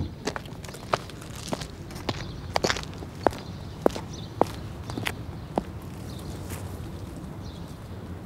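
Footsteps at a steady walking pace, a little under two steps a second, stopping about five and a half seconds in, over a low steady outdoor background.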